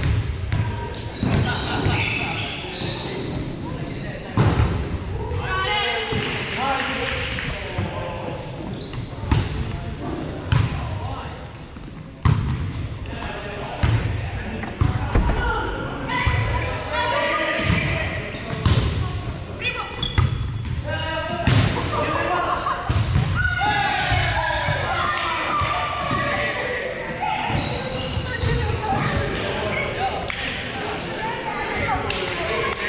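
Volleyball being hit and bouncing on a wooden gym floor: repeated sharp thumps at irregular intervals, echoing in a large hall, over the chatter of players.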